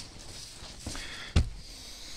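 Faint background noise with a single short knock about a second and a half in.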